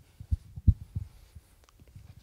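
Handling noise on a handheld microphone: a few soft, low thumps, spaced irregularly over about the first second and a half.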